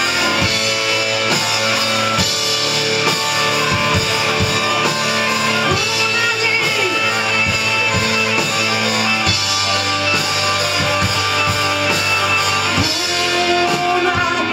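Live ethno-rock band playing: a bagpipe over electric guitar and a drum kit, with long held tones under a steady beat.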